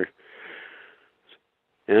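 A man drawing a short breath in through the nose, a sniff lasting under a second between sentences, followed by a faint mouth click.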